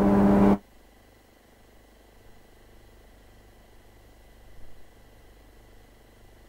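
A woman's voice ends with a held syllable, then only a faint steady electrical hum and hiss, with a slight bump about four and a half seconds in.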